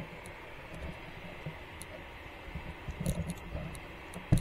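Light clicks and soft knocks from a camera being handled, clustered about three seconds in, over a steady faint outdoor hiss.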